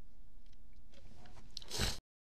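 Plastic model-kit parts clicking and creaking as fingers press a small panel onto the upper-chassis piece, building to a loud crunch near the end before the sound cuts off suddenly.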